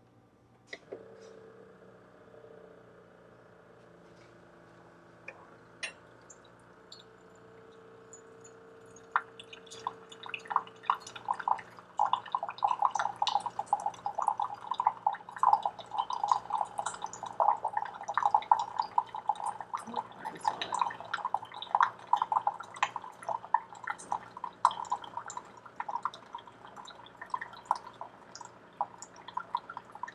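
Keurig single-cup coffee maker running: a faint steady hum at first, then from about nine seconds in, hot water spattering and gurgling as it streams into a mug, continuing throughout.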